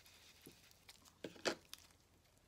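A sponge-tipped ink dauber dabbed through a plastic doily onto paper: a few faint taps and paper crinkles, the loudest about one and a half seconds in.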